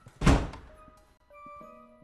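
A single heavy thud, a film sound effect, about a quarter second in, dying away within half a second. Soft, held music notes follow.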